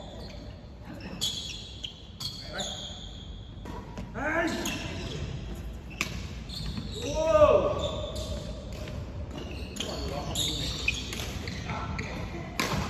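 Reverberant sports hall: people calling out in rising-and-falling voices, loudest about seven and a half seconds in, with short squeaks and knocks of shoes on the wooden court floor.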